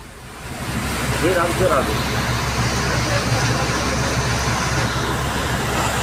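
Steady noise of a car on the move, a low rumble under a broad hiss. A person's voice is heard briefly about a second and a half in.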